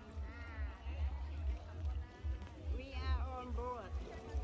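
Voices calling and talking, too unclear to make out words, over a steady low rumble.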